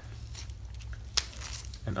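Elastic Velcro strap of a dog knee brace being worked loose and pulled back at its metal buckle: soft scratchy rustling of the hook-and-loop and strap, with one sharp click about a second in.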